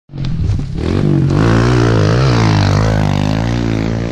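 Kawasaki KLX 140L's single-cylinder four-stroke engine being ridden hard on a dirt track, revving up and down with the throttle so that its pitch rises and falls.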